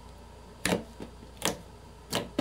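Thick slime being squeezed and folded by hand, giving sharp popping clicks: two clear pops under a second apart with a fainter one between.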